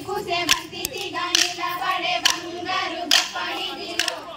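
Women singing a folk song together while striking wooden kolatam sticks, a sharp clack roughly once a second over the singing.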